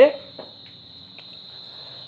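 A steady, high-pitched background trill during a pause in a man's speech, with the end of a spoken word at the very start.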